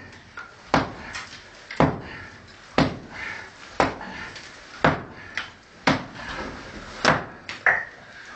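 A tool struck repeatedly against a bricked-up wall, about one sharp blow a second, each blow echoing in the brick tunnel.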